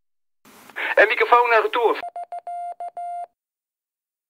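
A short voice clip with a thin, radio-like sound, then a single-pitch beep tone keyed on and off in short and long elements, sent like Morse code, ending a little past three seconds in.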